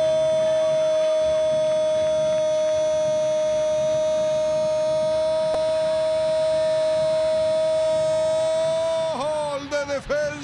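A sports commentator's long held goal cry, one "goooool" sustained at a steady pitch for about nine seconds. Near the end it breaks off into excited speech.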